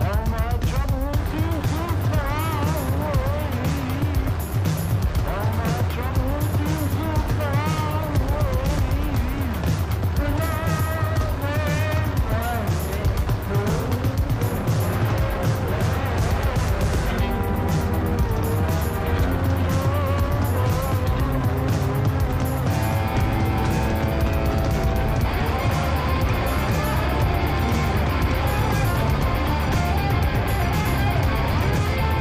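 Rock band playing an instrumental passage with no vocals: heavy bass and a steady drum beat under wavering, bending guitar notes.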